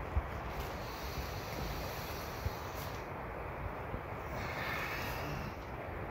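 Wind blowing steadily and rumbling on the microphone, with a couple of faint knocks.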